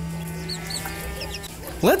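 Faint bird calls, a few short chirps about half a second in, over a low lingering hum as the music dies away; a man's voice starts near the end.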